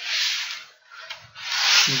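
Two bursts of rushing hiss, each about half a second long: one at the start and a louder one near the end. A faint click or two comes between them.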